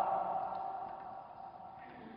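Quiet room tone as the echo of the last spoken word fades away.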